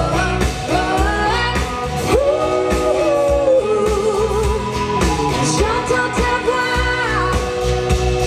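Live pop-rock band playing a song: a woman singing the melody, with held notes, over guitars, bass and drums keeping a steady beat.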